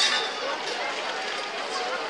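Indistinct chatter of several people talking among the stalls of an outdoor street market, with general open-air background noise.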